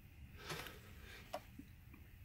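Near silence: room tone, with a faint soft rustle about half a second in and a small click in the middle.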